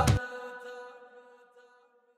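The last held note of a Gulf Arabic shayla chant ringing on and fading away just after the beat and bass stop, dying out well before the two seconds are up.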